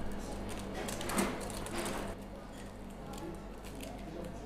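Scissors snipping through a crisp, fragile roll of baked pastry strands: a run of short cutting sounds, thickest in the first two seconds, over a steady low room hum.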